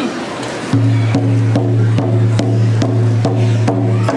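Several hide-covered frame hand drums struck with beaters in a steady powwow-style beat, about two and a half strokes a second, starting a little under a second in. Under the strokes sits a loud, low, steady drone.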